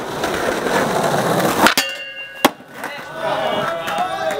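Skateboard wheels rolling over paving slabs, then a sharp clack of the board about 1.7 s in with a brief ringing after it, and a second sharp clack about 2.5 s in.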